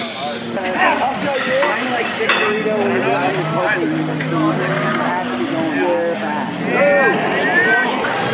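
Crowd chatter: many overlapping voices talking at once at a steady level, with no single speaker standing out.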